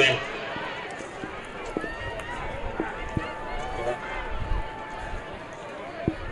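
Open-air stadium ambience of indistinct voices from players and crowd around a football field, with a short loud burst right at the start.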